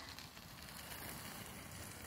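Faint, steady rolling noise of a LITH-TECH Smart Chair X electric folding wheelchair driving over gravel at its faster speed setting.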